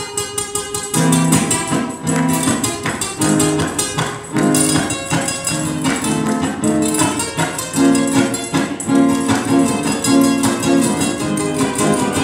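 Two acoustic guitars strummed in a brisk Latin rhythm, an instrumental passage without singing.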